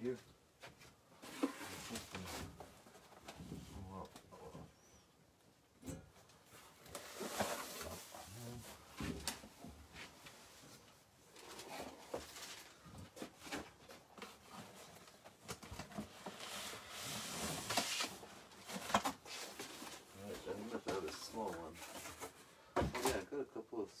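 Someone rummaging through boxes: bursts of rustling and scraping every few seconds, with several sharp knocks and clicks as containers are moved and opened.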